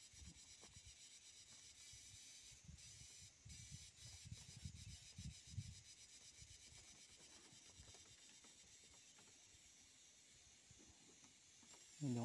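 Faint scratching and rubbing of a pen on paper, in short irregular strokes that die away after about six seconds, over a steady hiss.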